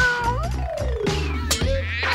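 A domestic cat's meow, a single call that rises and then ends about half a second in, over background music with a steady beat. A falling tone follows.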